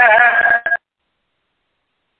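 A man chanting a Sanskrit verse, holding its last syllable on a steady pitch before it cuts off abruptly a little under a second in, followed by dead silence.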